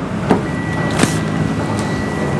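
Driver's door of a 2020 Toyota Yaris being unlatched and pulled open: a light click, then a sharper clack of the latch releasing about a second in. A faint steady high tone runs from about half a second in.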